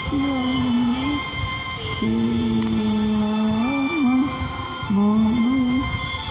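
A voice humming a slow devotional tune without words, in long held notes that slide and waver between pitches.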